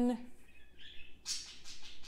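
A person's voice finishing a word, then a short pause with faint, brief high-pitched hissing sounds.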